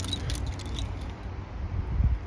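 A hand rummaging in a cloth draw bag, giving a run of small clicks and rustles that thin out after about a second, over a low rumble.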